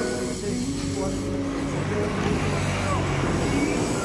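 A motor vehicle engine running steadily with a low hum, with faint voices in the background.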